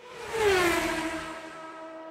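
Logo sting sound effect: a whoosh that swells to its loudest about half a second in, carrying a tone that slides down in pitch and settles into a steady held note that slowly fades.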